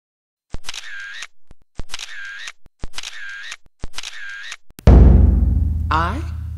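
A camera shutter sound effect four times, about a second apart, each a sharp click followed by a short high rattle. Near the end comes a sudden, loud, deep boom that dies away slowly.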